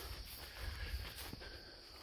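Faint outdoor ambience: a steady, thin high insect hum over a low rumble.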